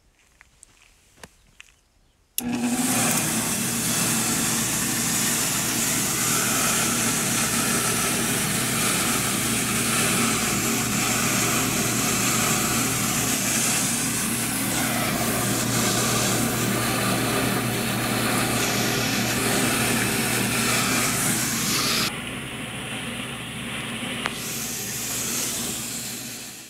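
Lortone TS-10 lapidary trim saw switched on about two seconds in: its belt-driven electric motor runs steadily with a low hum, and the 10-inch diamond blade spins through the water bath with a steady hiss of spray. The hiss thins out a few seconds before the end.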